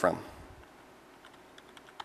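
Typing on a computer keyboard: a quick run of faint key clicks.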